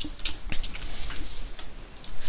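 Computer keyboard keys being pressed: a string of short, irregular clicks.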